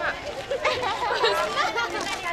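Overlapping chatter of several people talking at once in a crowd outdoors.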